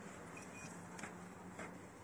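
Faint steady background noise with a low hum, and a brief faint high-pitched chirp about half a second in.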